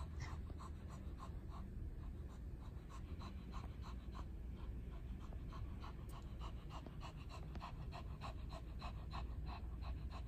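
Shih Tzu panting rapidly and evenly, about three to four quick breaths a second, winded from a burst of play.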